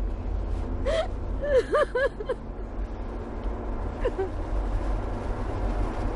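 A woman's short whimpering gasps, a cluster of them about a second in and one more near four seconds, over the steady low rumble of a car cabin on the move.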